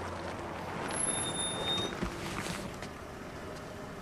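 Film soundtrack background noise: a steady traffic-like wash that swells about a second in, with a couple of brief high tones and faint clicks.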